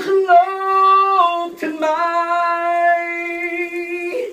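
A man singing karaoke, holding two long notes: the first for about a second, then after a short break a second, slightly lower note held for over two seconds.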